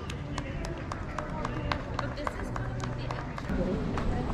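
Footsteps of several people walking on the stone pavement of a bridge, sharp irregular steps about three or four a second, with indistinct voices of passers-by behind them.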